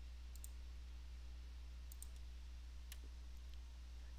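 Faint computer mouse clicks: two quick double clicks about a second and a half apart, then a couple of single clicks. They sound over a steady low hum.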